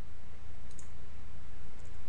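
Two faint computer-mouse clicks about a second apart, from clicking the GRAPH key on a calculator emulator, over a steady low hum and hiss.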